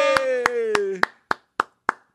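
A person clapping hands in an even rhythm, about three claps a second, over a long drawn-out cheering voice whose pitch slowly falls and fades out about a second in, leaving the claps alone.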